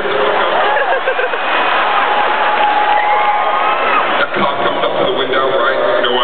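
A man's voice making drawn-out, sliding vocal sound effects rather than words, over steady audience noise in a large arena.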